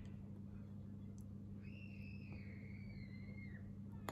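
Steady low electrical hum, with one faint high whistling tone lasting about two seconds in the middle, dipping slightly in pitch at its end.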